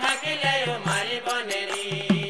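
Assamese nagara naam music: a man chanting a devotional melody over low drum strokes and bright cymbal strikes.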